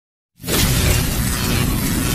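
Intro sound effect for a logo animation: after a moment of silence it starts suddenly about half a second in, a loud, dense rush of crashing noise with a deep rumble underneath, held steady.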